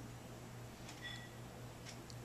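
Quiet room with a steady low hum and a few faint sharp clicks, one of them about a second in followed by a brief faint high beep.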